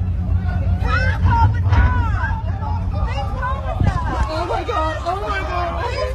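Several people's voices talking and exclaiming over one another, some raised and high-pitched, over a steady low rumble.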